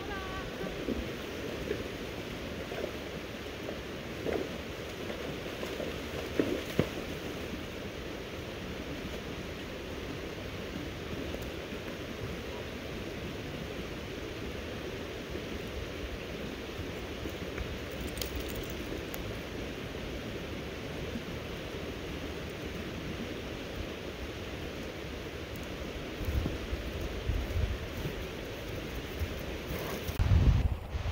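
Steady rush of a flowing creek, with a few low thuds near the end.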